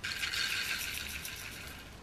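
Chia seeds pouring from a plastic tub into a blender jar: a soft hiss of small seeds that starts suddenly and fades away over about two seconds.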